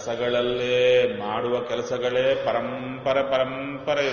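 A man chanting a line of devotional verse in a slow melody, in long held notes across a few phrases.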